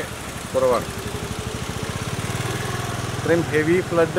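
A motor vehicle's engine running with a rapid, even throb, heard through a pause in the talk and rising slightly before speech resumes.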